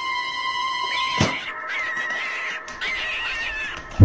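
A single thump about a second in as a plastic bucket is slapped down onto the ground, then a cat meowing in drawn-out calls that waver in pitch.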